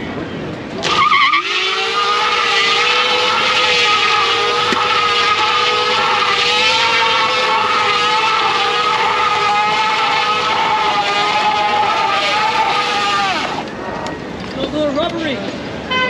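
Fat rear tyre of an electric bike spinning on asphalt in a smoky burnout: a loud, steady squeal that starts suddenly about a second in, holds for roughly twelve seconds, then drops in pitch and dies away. Voices are heard after it stops.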